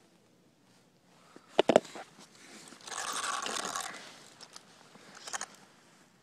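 Close handling noise from a hand working an RC truck's wheel and suspension: a few sharp plastic knocks about a second and a half in, then about a second of scraping rustle, and a couple of clicks near the end.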